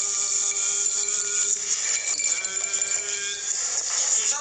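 Electric kitchen blender or mixer run in two bursts, each spinning up to a steady whine: the first about a second and a half long, the second a little over a second.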